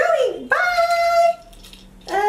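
A person doing a dog voice for a dog puppet: a short falling whine, then one held howl about a second long.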